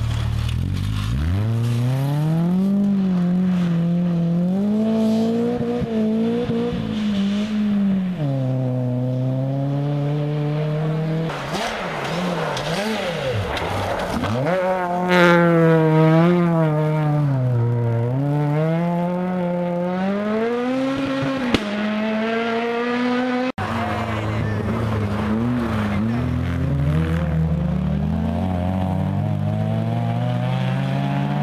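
Rally car engines revving hard through a snowy corner, several cars one after another, the pitch climbing and falling repeatedly with throttle lifts and gear changes.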